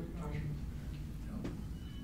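Faint, distant speech from someone in the room answering the lecturer's question, over a steady low room hum.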